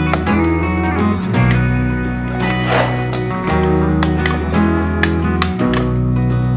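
Background instrumental music: plucked notes over a sustained bass line that changes about every two seconds.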